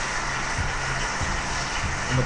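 Steady background hum and hiss with a low electrical drone, with no distinct event standing out.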